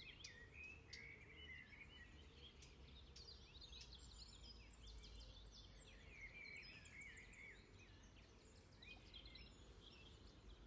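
Near silence with faint birdsong: small birds chirping and warbling on and off over a low background rumble.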